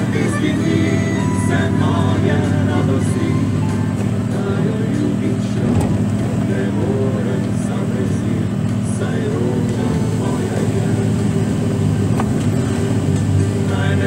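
Heavy truck's diesel engine running steadily, heard from inside the cab, under a song with singing.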